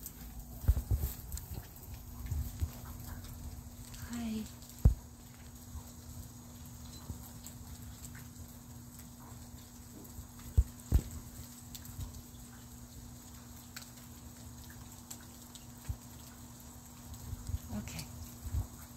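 A steady low hum under faint rumbling, with scattered sharp knocks and clicks, the loudest about five and eleven seconds in.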